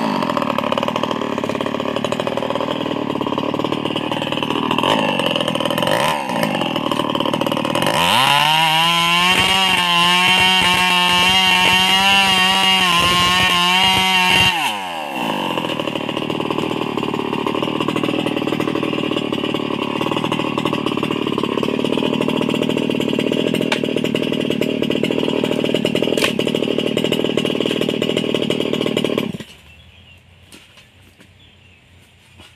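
Chainsaw engine running: it falls off high revs at the start, runs lower, then revs high and steady for about six seconds. It falls back to a steady idle and cuts out abruptly near the end.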